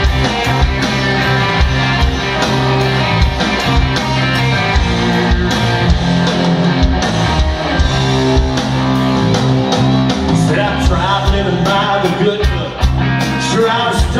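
Live country-rock band playing an instrumental passage: drums keep a steady beat under electric guitars, acoustic guitar and fiddle.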